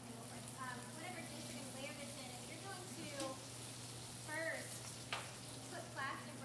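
Spinach wilting in a pan on a gas burner, a faint steady sizzle. Quiet voices sound now and then in the background, and there is a sharp click about five seconds in.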